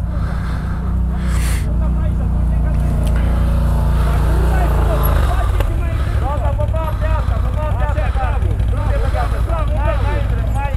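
CFMoto 1000 ATV's V-twin engine running under load as it climbs a steep gully, its low note shifting about halfway through.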